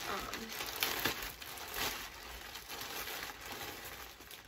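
Plastic mailer bag crinkling and rustling as it is handled and opened, in several short bursts.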